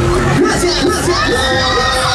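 Riders on a Mondial Heartbreaker thrill ride shouting and screaming together, several voices sliding up and down in pitch, over loud fairground music.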